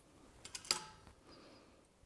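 A few faint metallic clicks and taps, clustered about half a second in, as locking C-clamp pliers and steel flat bar are handled and set against a pipe.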